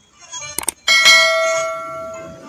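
Subscribe-button sound effect: two quick clicks, then a bell ding that starts about a second in and rings on, fading slowly.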